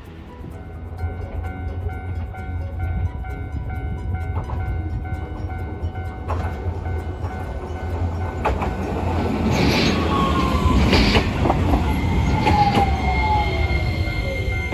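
Hiroden 5100-series Green Mover Max low-floor tram arriving at a stop: a low rumble on the rails that grows louder from about eight seconds in, with wheel clicks over the track and the traction motor's whine falling in pitch twice as it brakes to a halt.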